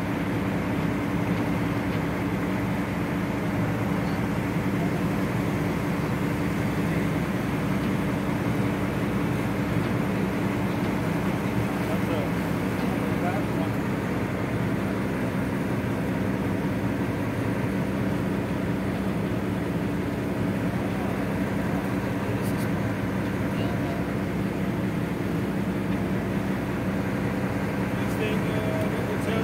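A steady low engine drone with a constant wash of noise, unchanged throughout, and faint indistinct voices beneath it.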